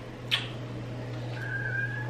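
A short wet kiss smack about a third of a second in, then near the end a thin, high, whistle-like tone held for about half a second.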